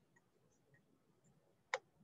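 Near silence with a single mouse click near the end.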